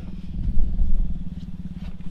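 Pickup truck engine running steadily at low revs while the truck reverses slowly, with a low rumble underneath.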